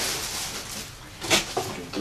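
Rustling of packing material and a cardboard shipping box being handled during unpacking, with one short, sharp rustle a little past a second in.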